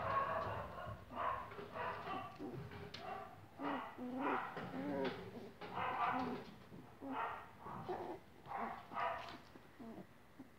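Young English Cocker Spaniel puppies whining and yipping in a steady string of short, high cries, more than one a second.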